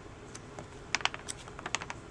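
Pages of a paper magazine being flipped, their edges flicking past in a quick run of soft clicks that starts about halfway through and lasts about a second.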